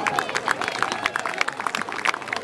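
Scattered applause from an audience: irregular, sharp hand claps, with voices talking faintly underneath.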